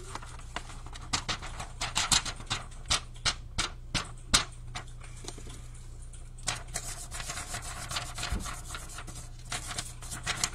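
Irregular brushing and rubbing strokes of a brush working loose glitter on a tumbler, with a quick run of sharp taps in the first half and softer, scratchier brushing later.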